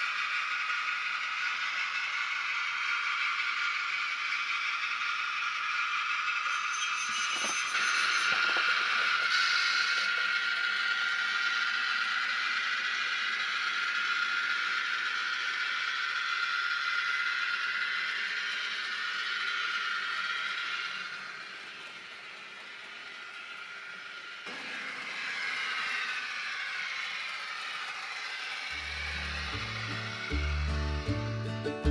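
Model trains running on a model railroad layout: the steady whirr of small electric motors and the clatter of wheels over track, with level shifts at a couple of points. Acoustic guitar music comes in near the end.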